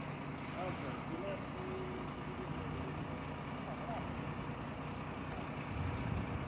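A fire truck's engine running steadily in a low rumble, with faint, brief voices over it.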